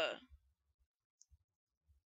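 A narrator's voice trails off at the very start, then near silence follows with only a few faint tiny clicks.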